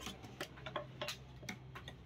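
Knife blade tapping and cutting against a wooden log chopping block as catla fish flesh is sliced into pieces: an irregular quick run of sharp clicks.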